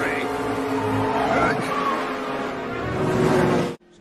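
A race-scene film soundtrack played backwards: race car engines running at speed under crowd noise, music and reversed voices. The whole mix cuts off suddenly near the end.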